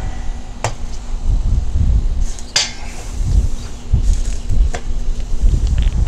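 Chunks of pecan wood set down by hand onto lit charcoal in the steel charcoal basket of a barrel smoker: three sharp knocks a couple of seconds apart, over a steady low rumble.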